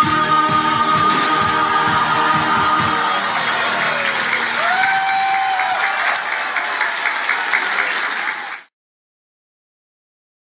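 A large choir and band end the song on a long held chord, over a low beat that stops about three seconds in. Audience applause follows and then cuts off suddenly shortly before the end.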